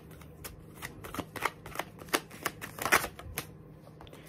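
A deck of tarot cards being shuffled by hand: a run of short, irregular card flicks and taps.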